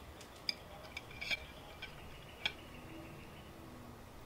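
Pit Barrel Cooker's metal hanging hooks clicking lightly as they are handled and worked into a whole chicken: a few scattered sharp ticks.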